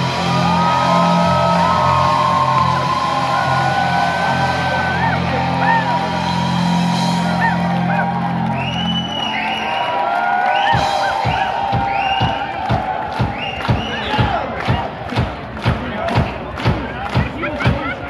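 Live amplified band music from guitars, bass and drums. Held low notes and guitar lines come first, then about eleven seconds in the drums come in with a steady beat of about two strikes a second.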